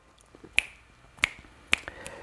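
Three finger snaps, about half a second apart, made while trying to recall a forgotten name.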